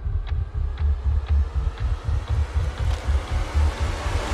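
Horror-trailer score: a throbbing low bass pulse, about three to four beats a second, with faint ticks about twice a second, under a noise swell that rises through the second half.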